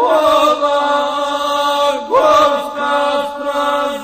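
Serbian epic song sung to the gusle, the single-string bowed folk fiddle: a chanting male voice over the instrument, in two phrases that each start with a slide up in pitch into a long held note.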